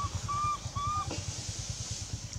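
Three short, high, whistle-like animal calls in quick succession, each slightly arched in pitch, over a low, rapid throbbing.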